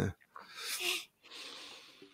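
A short, breathy nasal exhale close to a microphone, followed by a faint, steady hiss.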